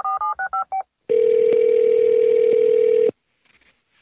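Touch-tone telephone dialing, a quick run of short key beeps, then about a second in a single two-second ringing tone on a phone line as the call rings through.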